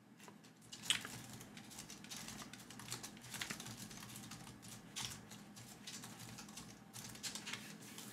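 Typing on a computer keyboard: a fast, irregular run of faint keystroke clicks.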